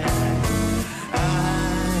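Live band music, an instrumental stretch of the song with sustained chords, with a brief dip in level about a second in before the band comes back in full.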